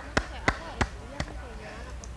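Four sharp taps or knocks at uneven spacing, a third to half a second apart and fading out by halfway, over faint background voices.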